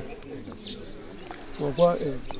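Small birds chirping in short, high notes in the background, with a man's voice coming in near the end.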